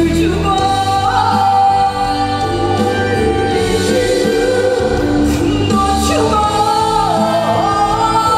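A female lead singer and a group of female backing singers singing a Korean pop song over instrumental accompaniment, holding long sustained notes that step to new pitches a few times.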